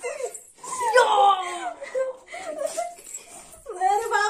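Girls' high-pitched squealing and laughing voices, with one long squeal falling in pitch about a second in.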